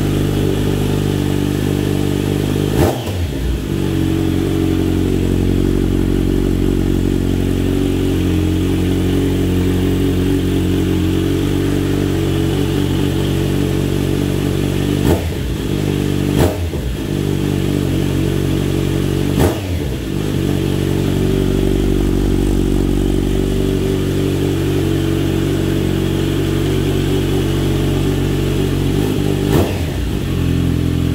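Kawasaki Z900RS inline-four with Akrapovic headers, idling steadily while warming up from a cold start. It is given five short throttle blips: one about three seconds in, three close together in the middle, and one near the end. Each blip rises quickly and drops back to idle.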